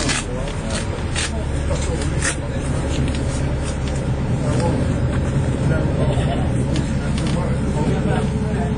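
Alexander Dennis Enviro400 MMC bus heard from inside while driving: steady low engine and drivetrain drone with tyre noise on a wet road, and a few sharp rattles or knocks from the body in the first couple of seconds.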